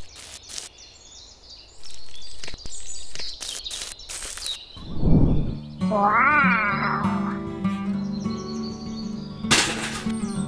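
Several short scraping strokes of a small trowel spreading mortar on miniature bricks. About five seconds in there is a low thump, then background music begins, with a brief wavering, meow-like cry near its start.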